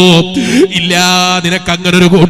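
A man's voice chanting in long held notes: one drawn-out note, a quick dip and rise in pitch, then another held note, over a steady low hum.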